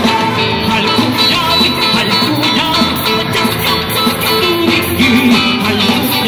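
Live rock band playing through a concert PA: electric guitars, bass and drums in a steady, dense mix.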